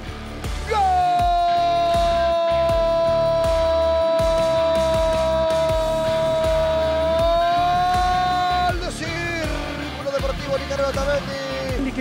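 Spanish-language football commentator's long drawn-out goal cry, one held "gol" of about eight seconds that rises slightly before it cuts off, followed by quicker excited commentary.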